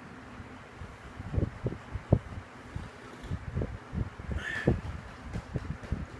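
A run of irregular soft low thumps, a few seconds of them, with a brief higher squeak about four and a half seconds in.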